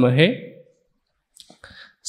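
A man's voice ends a phrase in Hindi through a close microphone, then a moment of complete silence broken by a few faint clicks just before he speaks again.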